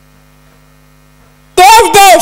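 Steady electrical mains hum from a microphone and PA system with no one speaking, then about one and a half seconds in a child's voice comes in loudly over the microphone.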